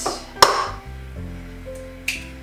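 A single sharp knock about half a second in, over background music.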